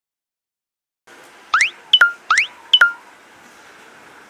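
Edited sound effect: a quick rising whistle-like sweep followed by a sharp pop with a short ringing tone, played twice in quick succession over faint street background.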